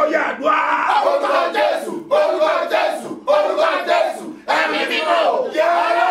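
A man shouting loudly in fervent prayer, in strained phrases broken by short pauses.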